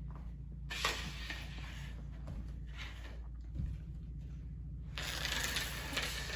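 Light scuffs and a sliding hiss from a flat mop pushing a plastic Tupperware lid across a hardwood floor. The brightest hiss comes in near the end.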